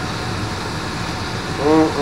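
Beef burger patties sizzling steadily on a hot flat-top griddle.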